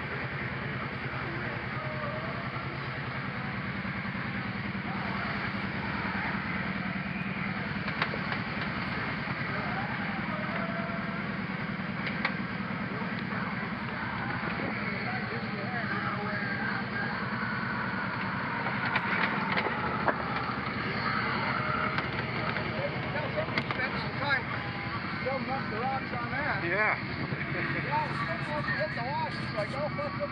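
Kawasaki V-twin ATV engine running steadily, with a few sharp knocks scattered through and the engine a little louder in the second half.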